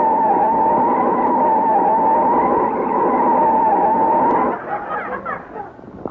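Radio sound effect of car tires screeching in a long skid, a loud wavering squeal that stops about four and a half seconds in: the car overshooting the stop.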